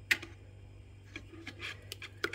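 Wire whisk clicking against the side of a plastic bowl while beating raw eggs: one sharp click just after the start, then a few fainter clicks.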